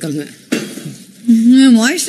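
Dishes clatter briefly in a kitchen about half a second in. Then, near the end, a woman's voice holds a note and rises, and this voice is the loudest sound.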